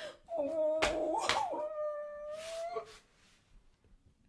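A woman's long crying wail, wavering at first and then held on one pitch for about two seconds before it breaks off, leaving a second of near silence.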